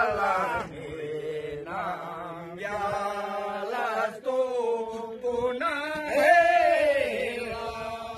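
Background music: a chanted vocal line with long, wavering, ornamented notes over a steady low drone.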